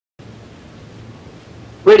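Steady hiss of shortwave radio reception. Near the end a male announcer's voice cuts in over it.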